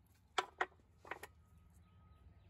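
Cut geode halves being handled on the plastic table of a tile saw: two sharp clacks of rock on hard surfaces, then a short cluster of clicks about a second in. The saw is not running.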